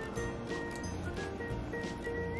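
Background music with soft, held notes that change pitch every so often.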